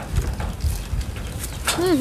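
Wind buffeting the microphone as a steady low rumble, with a few light knocks. A voice comes in near the end.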